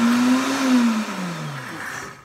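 Pampered Chef Deluxe Cooking Blender on pulse, whipping heavy cream and chocolate pudding mix into mousse. The motor runs loud, then its pitch falls as it winds down in the second half.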